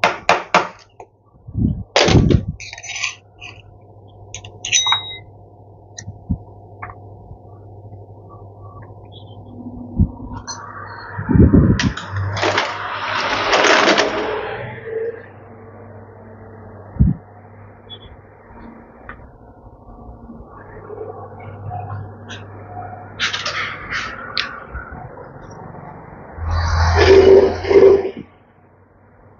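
Scattered metallic clinks and knocks of tools and scooter parts being handled during workshop repair, over a steady low hum. A hiss of about three seconds comes about twelve seconds in.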